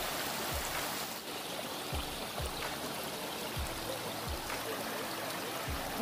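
Small woodland waterfall running down a rocky creek, a steady rushing of water, with a few soft low thumps scattered through it.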